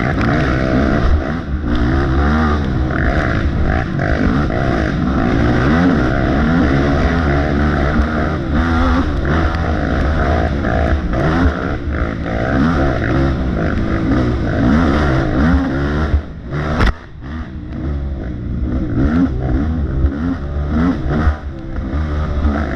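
Off-road racing engine heard onboard, revving up and down hard without letup as the throttle is worked along the trail. About three-quarters of the way through the engine briefly drops off, with one sharp click.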